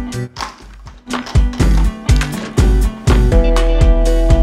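Background music with a steady beat and deep bass. It thins out briefly at the start, picks up again about a second in, and sustained chords come in near the end.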